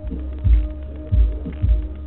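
Deep, uneven thumps, three in about two seconds, over a steady low hum, picked up by a security camera's low-quality microphone.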